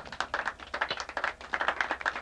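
Scattered clapping from a small audience: a few pairs of hands clapping irregularly just after the band stops playing.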